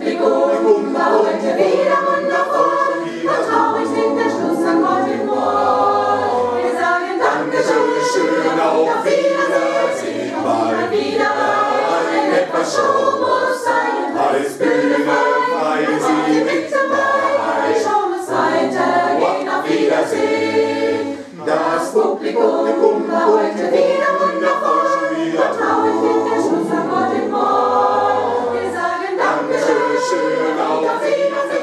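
Mixed choir of men's and women's voices singing a cappella, the low voices carrying a moving bass line under the upper parts, with a brief pause about 21 seconds in.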